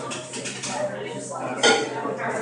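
A sheet of origami paper being folded and creased by hand, with a sharp crinkle near the end.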